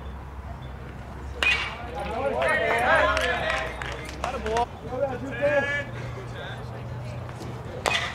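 Players' voices calling out around a baseball diamond. About a second and a half in there is a sharp pop as a pitch smacks into the catcher's mitt. Near the end a second sharp crack comes with the batter's swing.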